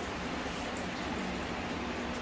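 Steady background hum and hiss with a faint low tone, even in level, with no distinct event.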